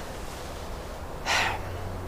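A short, audible intake of breath about a second and a half in, just before speaking, over a steady low outdoor background hum.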